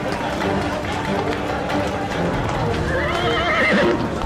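A horse whinnies once about three seconds in, a warbling call that wavers in pitch, over crowd chatter and background music.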